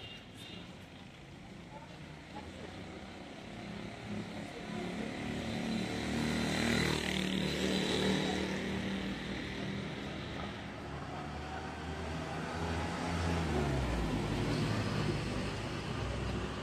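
Street traffic: motor vehicles driving past close by. The engine sound builds from about four seconds in and is loudest a little past the middle. Near the end another engine drops in pitch as a vehicle goes by.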